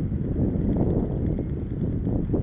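Wind buffeting the microphone of a camera on a moving bicycle: a steady low rushing noise, with road noise from the ride underneath.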